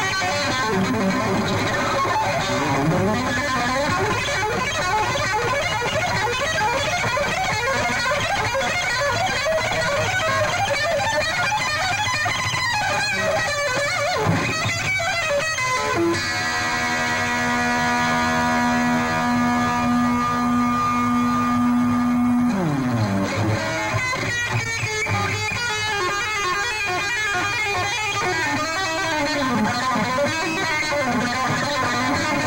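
Distorted electric guitar, a striped Frankenstrat-style guitar, playing a solo of fast runs. About sixteen seconds in it holds one long sustained note for roughly six seconds, which then dives steeply down in pitch before the fast runs start again.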